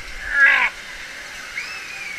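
A short, high-pitched squeal from a person, falling in pitch, about half a second in. Near the end comes a fainter thin squeal, over a steady hiss of background noise.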